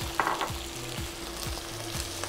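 Cooked, peeled prawns frying in a little hot oil in a shallow non-stick pan, with a steady sizzle.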